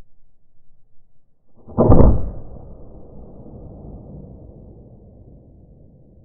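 A single shot from a suppressed .30 caliber Hatsan Mod 130 QE break-barrel air rifle about two seconds in: a sudden thump with a sharp crack, followed by a low rumble that fades over about four seconds.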